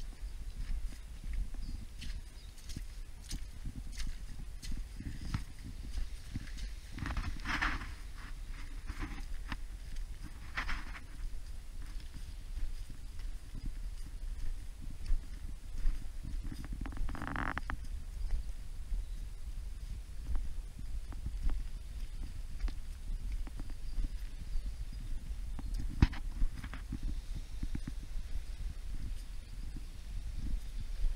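Footsteps on rock: a run of irregular knocks and scuffs as someone walks over a rocky shore, with a steady low rumble underneath and a few short, louder rushes.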